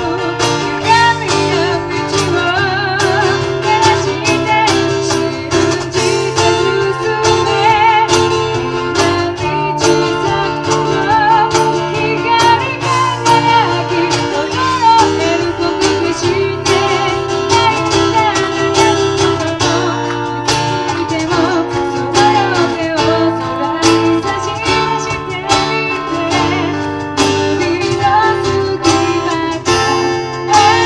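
Live band music: a woman singing over a strummed acoustic guitar, with electric guitar and regular cajon beats.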